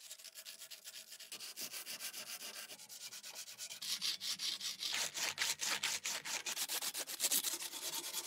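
A strip of P180 sandpaper is pulled rapidly back and forth over a rusted knife blade clamped in a vise, sanding off the rust in quick, even scraping strokes. The strokes get louder about halfway through.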